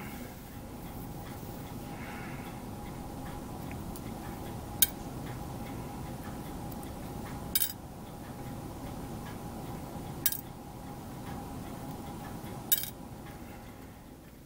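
Four sharp, short metallic clicks a few seconds apart over a steady faint hum: small hobby tools clicking against a brass photo-etch fret as tiny parts are taken off it.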